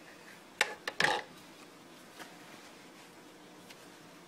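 A Mora knife handled on a plastic cutting board: two short sharp knocks about half a second apart, then a louder brief clatter about a second in.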